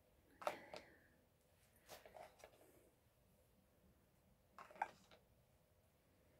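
Faint handling sounds from a small plastic hand cream tube and its wrapping: a few short clicks and rustles in three brief clusters, about half a second in, around two seconds in and near five seconds in, with near silence between.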